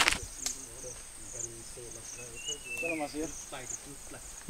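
Insects chirping in short high pulses about twice a second over a steady high whine, with faint voices in the background.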